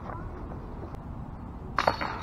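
A disc golf disc striking the hanging chains of a metal basket near the end: a sudden metallic clash, two quick hits that ring on briefly.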